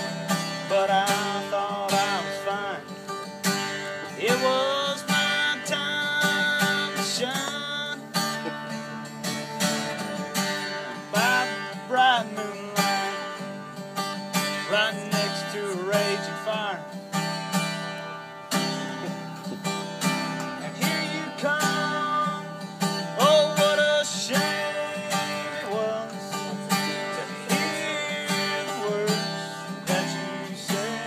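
Acoustic guitar strummed and picked in a country song played live, with a man's voice singing over it at times.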